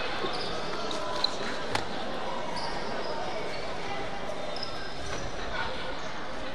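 A basketball bouncing a few times on the hardwood court, with sharp thumps in the first two seconds, over indistinct voices echoing in a large gym. Short high squeaks of sneakers on the floor come and go.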